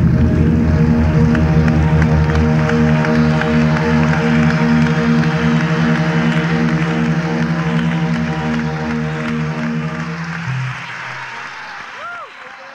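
Live jazz-fusion band with electric bass holding a long sustained chord, one tone pulsing evenly, over audience applause. The low notes drop out near the end and the sound fades away.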